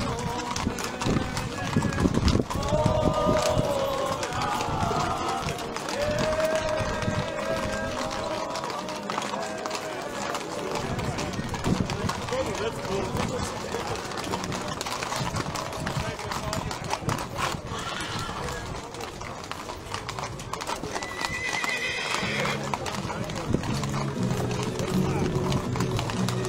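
Many ridden horses, mostly Lipizzaners, walking as a group on asphalt, their hooves clip-clopping in a dense, uneven patter. A horse whinnies about 21 seconds in.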